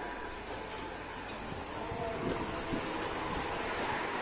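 Steady hum of street traffic and city background noise, with a few light clicks and knocks as a glass door is pushed open.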